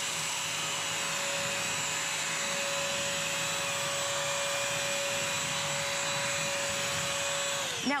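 BISSELL CrossWave wet/dry vacuum running steadily with a motor whine and hum while its brush roll picks up dry cereal and spilled milk. Near the end it is switched off and the motor winds down, falling in pitch.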